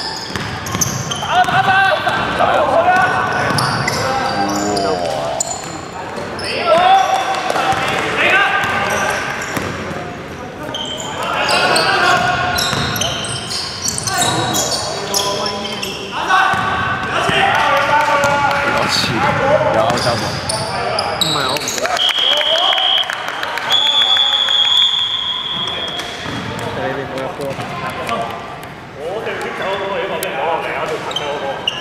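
Basketball game in an echoing sports hall: a ball bouncing on the hardwood court under players' voices calling out. Two long steady whistle blasts near the end, where play stops.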